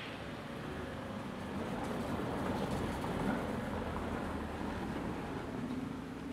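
Steady rumble of road traffic that grows a little louder in the middle and then eases off.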